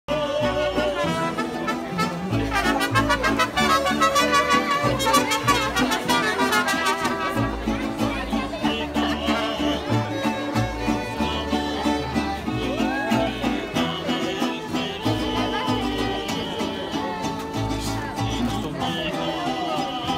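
Lively music from a live string band, with stringed instruments over a steady bass line.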